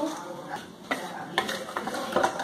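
Wire whisk mixing runny cake batter in a bowl: soft stirring with a few sharp clicks of the whisk against the bowl from about a second in.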